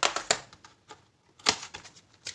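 Cardboard box and plastic tray of a watercolour paint set handled on a tabletop, giving sharp clicks and taps: a quick run of them at the start and a single loud one about a second and a half in, as the box's flaps are folded.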